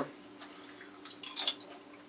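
Dried apple chips crackling crisply in a short burst about one and a half seconds in, over a faint steady hum.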